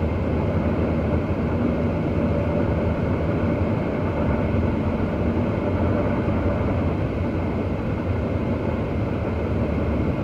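Steady road and engine noise inside a car's cabin while driving at highway speed, an even rumble with no changes.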